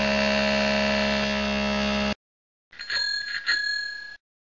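A steady held sound of many tones lasting about two seconds. After a short gap, a bell is struck twice and rings.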